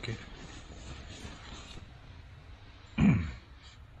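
Faint rustling of clothing as a hand digs a torch out of a jacket pocket, then about three seconds in a man clears his throat once, a short low sound that drops in pitch.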